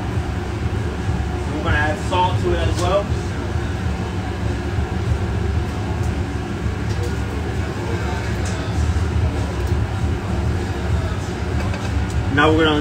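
Steady low droning hum, with a few words spoken briefly about two seconds in.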